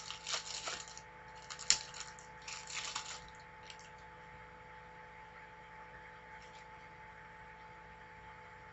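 Trading cards and their pack being handled by hand: crinkly rustling with a sharp click over the first three seconds, then only a faint steady hum.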